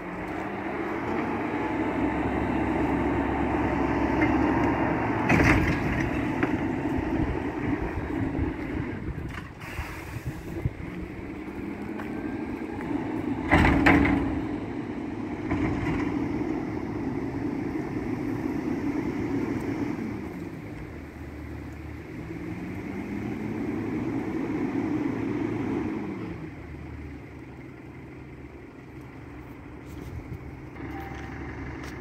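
Mack LEU garbage truck's engine running and revving up and back down several times as its Heil Curotto-Can arm works, lifting a cart overhead. Two sharp bangs, a smaller one about five seconds in and a louder one about fourteen seconds in.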